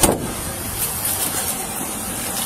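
Steady noise of motor vehicles running on the street, picked up by a body-worn camera, with a brief scuff right at the start.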